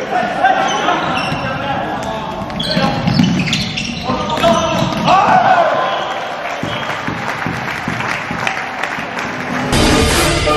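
Floorball play on an indoor court: sharp clacks of sticks hitting the plastic ball and floor, with players calling out, ringing in a large hall.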